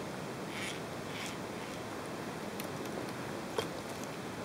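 Handling noise: two soft rustles in the first second or so and a single sharp click about three and a half seconds in, over a steady hiss.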